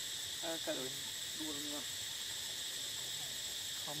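Steady, unbroken chorus of forest insects, a continuous high-pitched drone with a thinner, higher whine above it. A person speaks briefly twice over it and again near the end.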